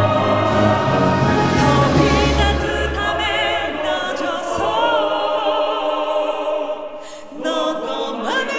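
Symphony orchestra and mixed choir performing a ballad live, singing voices with vibrato over strings. The bass-heavy full orchestra thins out about halfway through, leaving the voices over lighter accompaniment. After a brief dip near the end, a voice rises into a new phrase.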